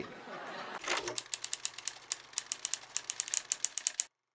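Rapid, irregular clicking like typewriter keys, several clicks a second over a low steady hum, starting about a second in and cutting off suddenly at the end.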